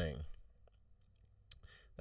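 A man's voice trails off at the end of a word, then a pause of near silence broken by a brief faint click about a second and a half in.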